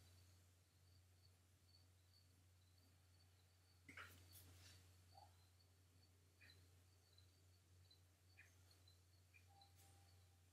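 Near silence: room tone with a low steady hum and a few faint, short scratches of a soft graphite pencil on paper, the loudest about four seconds in.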